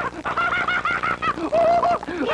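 Rapid squawking, clucking cartoon vocal noises: a quick run of short pitched calls, several a second, ending in one held note near the end.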